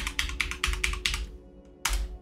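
Computer keyboard being typed on: a quick run of keystrokes entering a password for about a second, then one keystroke near the end as Enter is pressed.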